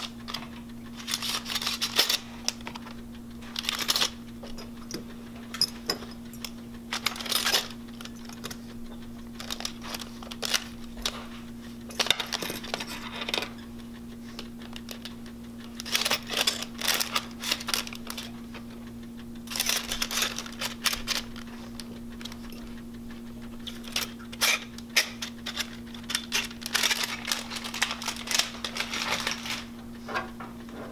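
Sterilization pouch rustling and crinkling, with light clicks of metal dental instruments, as the instruments are handled and packed. The sounds come in irregular bursts over a steady low machine hum.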